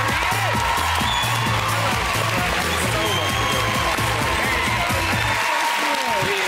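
Walk-on music with a steady, repeating bass line over studio audience applause and cheering. The music stops about five seconds in, leaving the applause.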